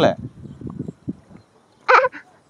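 Feet wading and sloshing through shallow water in a flooded paddy, faint and irregular, then a short sharp call, a voice or a dog's bark, near the end.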